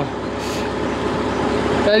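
Narrowboat engine running steadily while cruising: a constant low drone under an even hiss.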